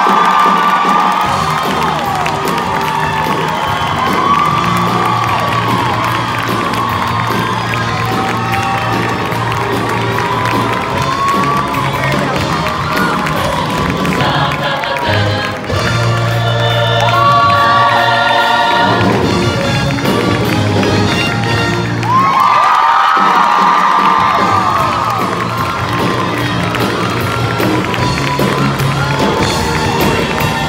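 A show choir singing full-voiced with instrumental accompaniment, sustained notes swelling and falling away several times, while the audience cheers and whoops over the music.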